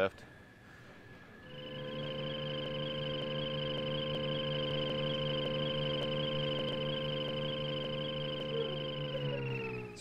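Electric self-balancing scooter running: a steady, even-pitched electric whine that starts about a second and a half in, holds level, then sags slightly and stops near the end as it slows.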